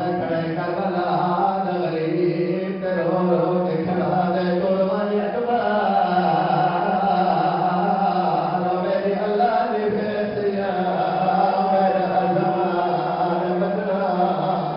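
A zakir's chanted recitation of masaib: one man's voice sung in long, held melodic lines into a microphone, with brief breaths between phrases.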